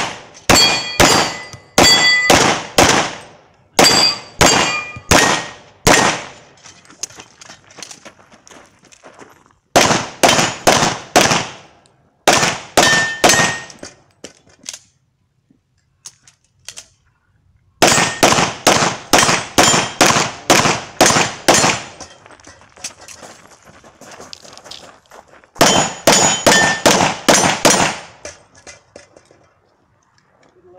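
Semi-automatic pistol fired in fast strings of shots at steel targets, with the steel plates ringing on hits. The shots come in five bursts with short pauses between them and a quiet gap of about three seconds in the middle.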